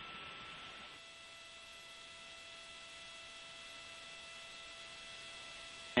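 Faint steady electronic hum and hiss on a broadcast audio feed, made of several thin steady tones, with one more tone and a wider hiss joining about a second in.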